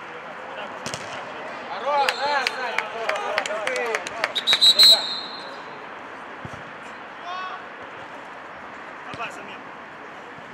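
Footballers shouting during play, with a few sharp knocks of the ball, then a referee's pea whistle blown in one short trilling blast about four and a half seconds in, stopping play. After that there is only a steady outdoor background and a brief call.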